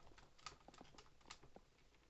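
A few faint, scattered clicks and taps of hard plastic toy parts being handled, over near silence.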